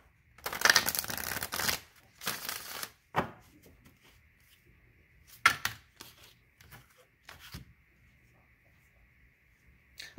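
Oracle card deck shuffled by hand in two rustling bursts over the first three seconds, then a few short card taps as cards are drawn and laid down.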